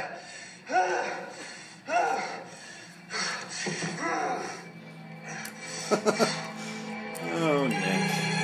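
Film soundtrack: a voice giving drawn-out cries, each falling in pitch, about once a second, over music. About six seconds in there is a quick run of sharp knocks.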